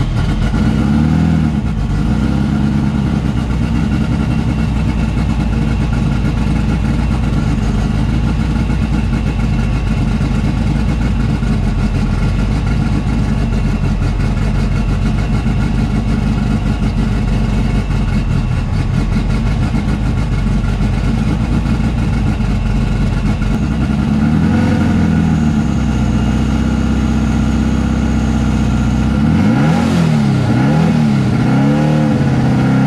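Turbocharged VW drag Bug engine idling, heard from inside the car, with a short rise and fall in engine pitch shortly after the start and a few more near the end, as the throttle is blipped.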